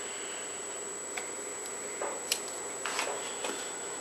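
A few faint, scattered clicks and ticks of a small flat screwdriver being worked in between the strands of a bowstring, over a steady low hiss with a thin high whine.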